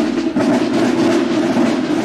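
Marching band percussion: snare and bass drums playing a steady, rapid march rhythm.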